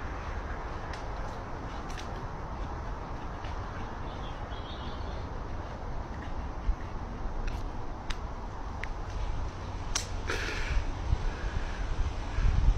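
Steady wind on the microphone, with a few brief sharp clicks and a short rustle near the end.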